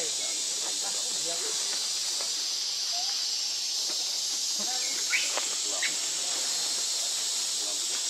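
Steady high-pitched hiss of insects in the trees, with a few faint short chirps about five seconds in.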